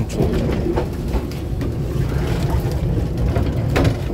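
Interior running noise of a Taiwan Railways EMU700-series electric multiple unit under way: a steady low rumble. Scattered crackles come from a plastic bag rubbing close to the microphone.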